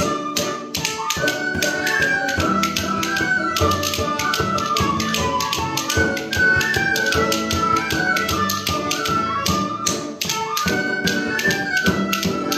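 Irish traditional ensemble playing a mazurka: high tin whistles carry a quick, ornamented melody over a bodhrán beat, with sharp percussive taps falling several times a second throughout.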